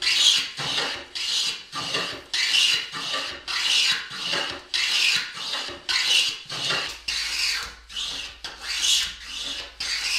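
Metal hand plane cutting a chamfer along the edge of a wooden vice jaw, taking shavings in quick, even strokes of about two a second.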